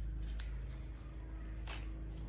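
Small clicks and scrapes of hands working a band onto an Apple Watch Ultra case: a short click about half a second in and a brief scrape near the end, over a steady low hum.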